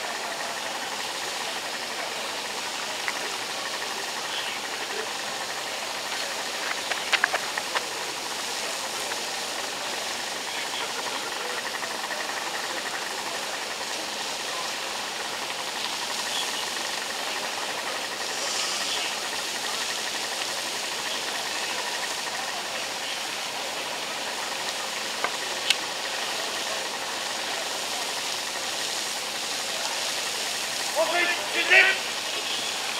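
Steady hiss of a high-pressure fire hose stream jetting from the nozzle, with a small portable fire pump engine running under load. A few short clicks come about seven seconds in and again near the end.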